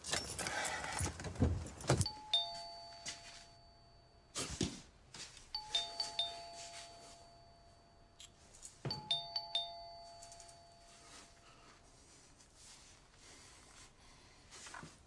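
A two-tone doorbell chime rings three times, about three seconds apart, each ring a higher note falling to a lower one (ding-dong). Music and other sound in the first two seconds stop before the first ring.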